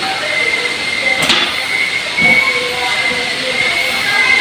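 Steady hissing background noise with a thin, high, constant whine running through it, and a sharp click about a second in.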